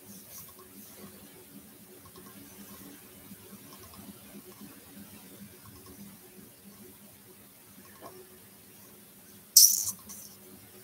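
Quiet room tone with a faint steady hum. Near the end a single short, sharp hiss cuts in.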